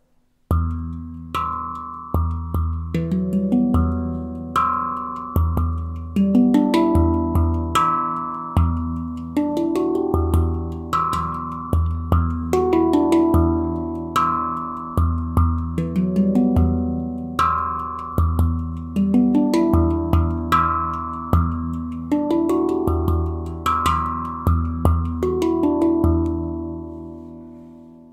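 Handpan played with bare hands: a steady rhythm of deep ding strokes and sharp rimshot taps, each line closing with a short melodic run of ringing tone-field notes. The last notes are left to ring and fade out near the end.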